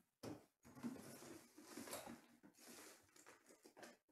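Faint, irregular rustling and soft clicks from trading cards and pack wrappers being handled.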